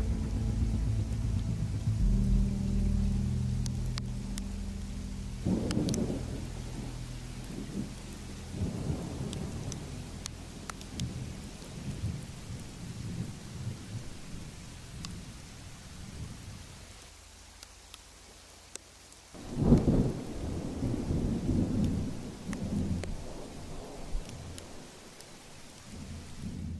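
Thunderstorm: thunder rolling over steady rain, with a few rumbles early on and a loud clap about twenty seconds in that rumbles on for several seconds.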